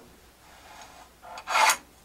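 One short, scratchy scrape on a pine board about one and a half seconds in, with faint rubbing before it, as a cut line is marked with a lead pointer pencil against a speed square.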